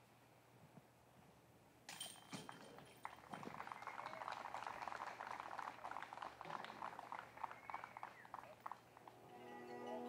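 A disc golf putt striking the metal chains of a basket about two seconds in, with a short metallic jingle, followed by several seconds of scattered applause from the gallery for the made par putt.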